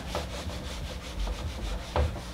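Whiteboard eraser wiped across the board in quick back-and-forth strokes, several a second, with one sharper knock near the end.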